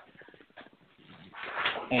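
A pause in a man's talk, with only faint low background for about a second, then a quieter voice-like sound building up into his next words near the end.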